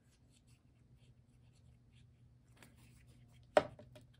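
Faint rustling and light taps of hands handling cardstock and small paper pieces on a tabletop, with one sharp knock about three and a half seconds in as a plastic fine-tip bottle of glitter glue is set down.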